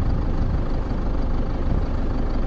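Diesel engine of a multi-trailer tipper truck idling, a steady low sound.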